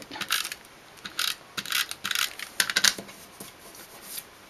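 Adhesive tape runner being pressed and drawn across small paper cut-outs, laying glue: a string of short, scratchy strokes.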